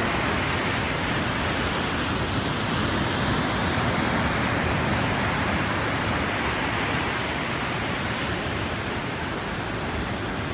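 Ocean surf breaking and washing up a sandy beach: a steady rush of noise that swells a little in the middle and eases slightly near the end.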